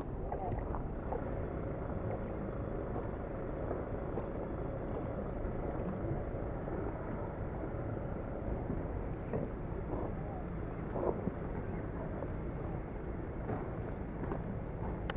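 Wind blowing across the camera microphone: a steady low rumble with a few faint ticks on top.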